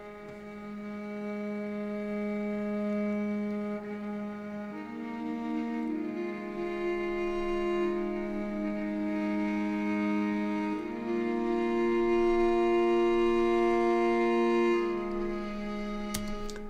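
Sampled cello, a flautando (bowed over the fingerboard) patch, playing slow, overlapping held notes that change every few seconds. The sound builds gradually louder and eases off near the end.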